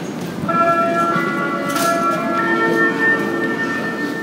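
Airport public-address chime: a few bell-like notes, the first about half a second in, each ringing on and overlapping. It is the signal that opens the next gate announcement.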